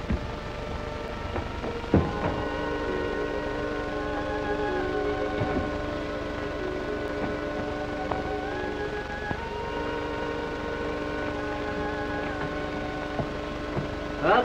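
Film underscore music: sustained chords of several held notes that shift to new pitches a few times. They begin about two seconds in with a short knock.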